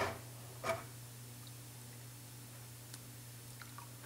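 Faint clicks and light wet handling of SU carburetor parts in an ultrasonic cleaner's basket of cleaning fluid, a few scattered ticks with the loudest just under a second in, over a low steady hum.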